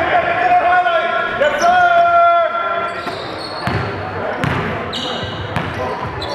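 Basketball game on a gym's hardwood floor: two long drawn-out voice calls in the first half, then a basketball bounced four times on the floor with short sneaker squeaks, all echoing in the hall.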